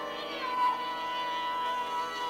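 Sarangi bowing one long, steady note in raag Kaunsi Kanada over a steady drone, after gliding ornamented phrases.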